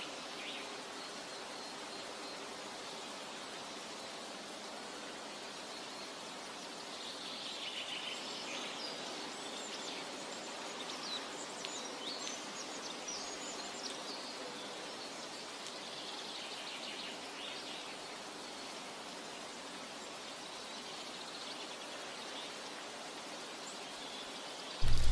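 Faint outdoor ambience: a steady soft hiss, with faint high chirps coming and going through the middle.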